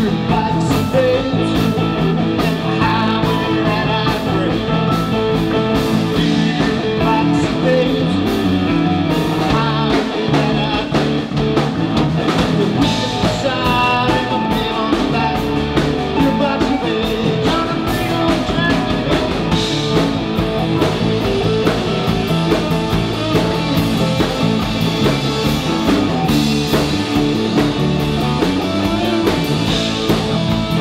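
Live rock band playing: electric guitar over a drum kit.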